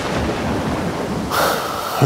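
Rolling clap of thunder over steady rain, a storm sound effect.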